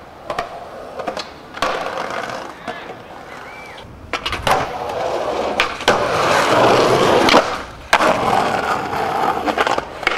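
Skateboard wheels rolling over pavement, the roar swelling and dropping across several runs, with sharp clacks of the board now and then.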